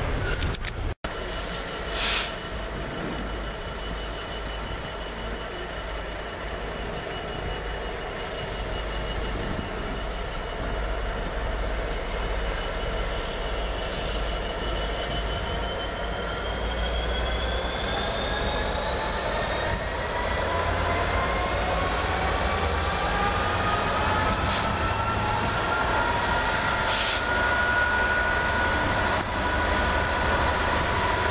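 Freightliner Class 66 diesel-electric locomotive approaching with a container freight train, its two-stroke V12 engine running with a steady low rumble. A whine rises steadily in pitch over the second half, and two short clicks sound near the end.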